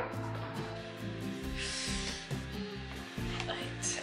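Soft background music with sustained low notes, and a brief papery rustle about halfway through as oracle cards are handled on the table.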